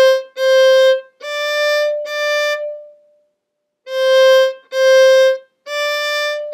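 Solo violin bowing single notes on the A string: two C's, then two D's a whole step higher, then after about a second's pause C, C and D again. The notes are slow, even and separate, played as a teaching demonstration.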